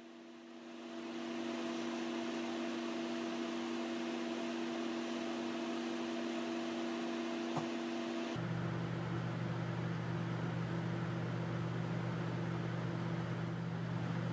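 Steady hum of a laminar flow hood's blower fan, with a few held tones over an even rush of air. About eight seconds in, the hum changes abruptly to a lower pitch.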